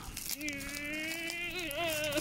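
A child's voice holding one long, drawn-out vowel, level in pitch for over a second and then wavering before it stops.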